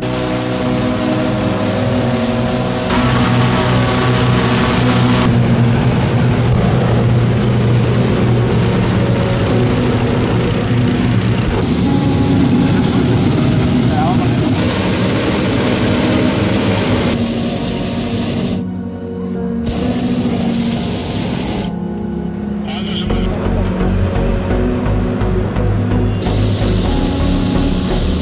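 Hot-air balloon propane burners firing in long blasts, a loud hissing rush that starts and stops abruptly several times, heard over background music.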